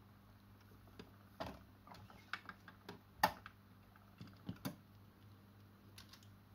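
Irregular light mechanical clicks and clacks from a 1971 Electrohome Apollo 862 turntable's record-changer mechanism, with the loudest clack a little past three seconds in, over a faint steady hum.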